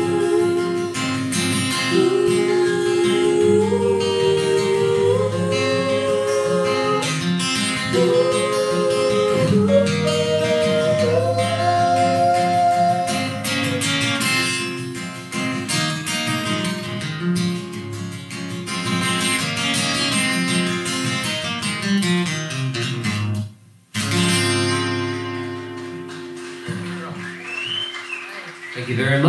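Acoustic guitar with a man and a woman singing a song together in harmony, performed live. The sound drops out for a moment about three-quarters of the way through, then the guitar and singing carry on.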